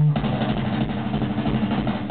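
Live rock band: a held low note breaks off right at the start and the band comes in loud with distorted electric guitars and drums.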